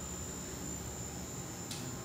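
Steady hum and hiss of a fish store's aquarium equipment (pumps and filtration), with a thin high whine throughout and a brief hiss near the end.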